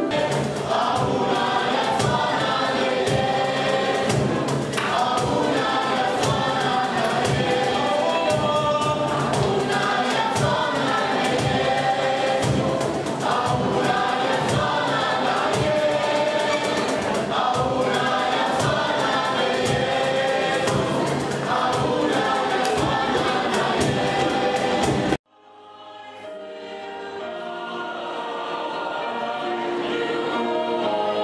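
Choir singing over a steady percussive beat. About 25 seconds in the sound cuts off abruptly, and another choir's singing fades in.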